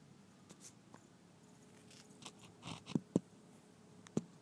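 Phone being handled and set in place: faint rustles, then two sharp knocks close together about three seconds in.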